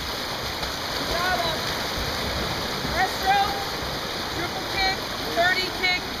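Water splashing and churning as water polo players swim across a pool, a steady wash of noise. Short faint calls of voices come through it now and then.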